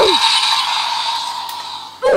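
Electronic sound effect from a DX Kamen Rider Wonder Ride Book toy's speaker: a sustained hissing tone that fades out gradually over two seconds.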